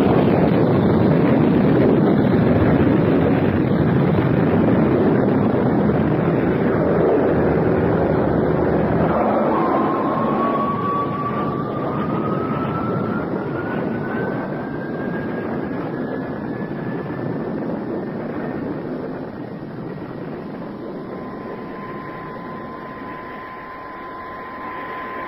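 Radio-drama sound effect of a spaceship's drive: a loud rushing noise that slowly fades, its deepest rumble dropping away about nine seconds in. From about ten seconds in, a thin electronic tone slowly rises in pitch, and near the end a steady tone holds.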